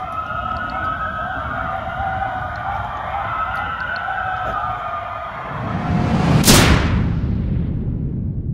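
Several coyotes howling together in long, wavering calls. About six and a half seconds in, a loud whoosh and boom swells and then dies away.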